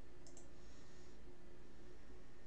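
Two quick, sharp clicks about a quarter second in, followed by a brief faint hiss, over a steady low hum.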